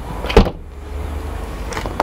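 A Lada Granta liftback's boot lid slammed shut with a single sharp thump about half a second in, latching it closed.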